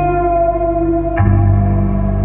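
Amplified acoustic guitar played through effects: ringing, sustained notes with a long echo over a held low tone, a new note picked about a second in.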